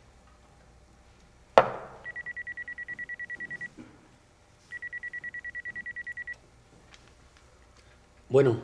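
A shot glass knocks down hard on a wooden bar top about a second and a half in. Then an electronic telephone rings twice, each ring a high trilling tone of about ten quick pulses a second lasting a second and a half.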